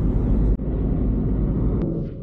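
Cabin drone of a Suzuki S-Presso's small three-cylinder engine and road noise while cruising steadily at about 67 km/h with the revs kept low. There is a brief dip about half a second in and a single click near the end.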